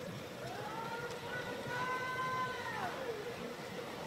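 A baby macaque gives one long, drawn-out call that rises, holds steady and then drops in pitch near the end.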